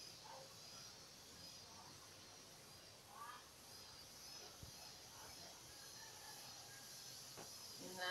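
Near silence: quiet room tone with faint high chirps repeating at a steady pace.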